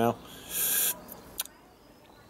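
A short hissing breath from a person, about half a second in, followed by a single small click a little later.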